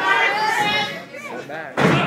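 Spectators' voices, then near the end a single sharp, loud smack of a wrestling impact in the ring, a body or a strike landing.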